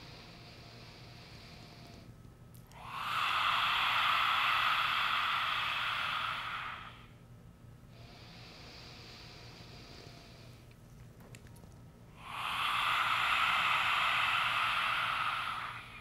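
Lion's breath (simhasana pranayama): two forceful open-mouthed exhalations with the tongue stuck out, a long breathy 'haaa' of about four seconds each, the first about three seconds in and the second near the end. Quieter inhales through the nose come before and between them.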